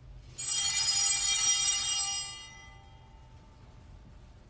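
Altar (sanctus) bells, a cluster of small bells, shaken about half a second in and ringing for about two seconds before fading away. They mark the elevation of the bread or cup during the Eucharistic consecration.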